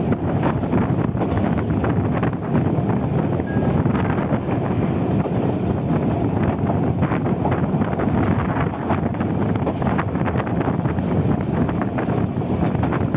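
Sri Lankan rail car T1 515 running along the track, heard as a steady rumble under heavy wind buffeting on the microphone held out of its window.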